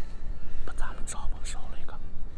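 A man speaking Mandarin in a low, hushed voice close to a whisper, over a steady low rumble.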